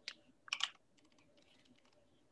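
Typing on a computer keyboard: a click at the start, a louder cluster of keystrokes about half a second in, then faint scattered key clicks.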